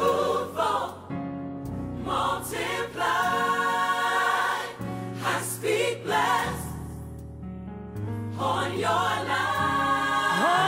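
Gospel song: a choir singing over steady low accompaniment notes that change every second or so.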